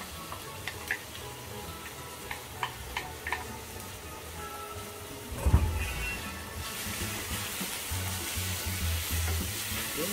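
Sliced onions and garlic sizzling in hot oil in a stainless-steel frying pan, stirred with a wooden spatula, with a few light taps in the first half. A single loud thump comes about halfway through, and the sizzling is louder and hissier after it.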